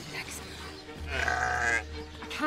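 A ram stuck in bog mud bleating once, a drawn-out call that starts about a second in.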